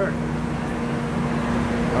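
Steady background hum and hiss with a single constant low tone.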